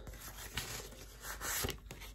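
Quiet rustling of paper with a few light clicks as a bundle of paper tied with jute twine is handled.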